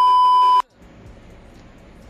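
Steady high-pitched test-tone beep of the kind laid over TV colour bars, cutting off abruptly just over half a second in, then faint room tone.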